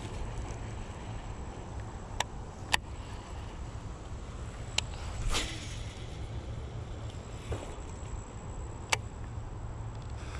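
Wind rumbling on the microphone, with a few sharp clicks and a short swish about five seconds in from handling and casting a baitcasting rod and reel.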